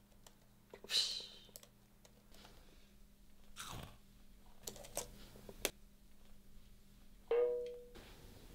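A few sharp crunches as a raw baby carrot is bitten and chewed in a quiet room. A brief hiss comes about a second in, a falling swoosh just before the crunches, and a short pitched tone near the end.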